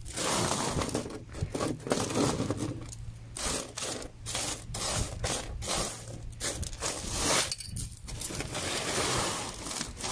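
Washed sapphire gravel being pushed and spread by hand across a flat sorting surface, the pebbles scraping and clinking against it in repeated sweeps.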